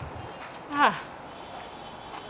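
A man's short exclamation, 'ah', falling in pitch, about a second in, over a quiet background.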